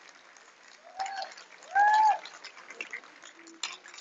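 Audience clapping lightly, with two high cheering shouts from the crowd, a short one about a second in and a longer, louder one about two seconds in.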